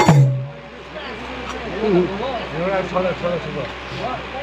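A last stroke on a double-headed barrel hand drum, its low head ringing briefly and dying away as the drumming stops; from about a second in, a voice talks.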